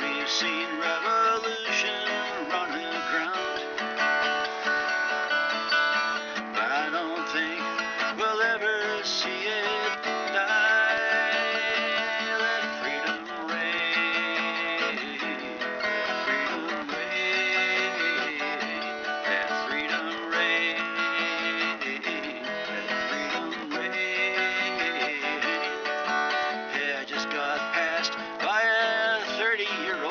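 Instrumental break of a folk song: acoustic guitar strumming chords steadily, with a wavering melodic lead line on top and no vocals.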